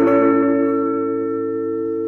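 Acoustic guitar's final chord, strummed just before and left ringing, its held notes slowly fading.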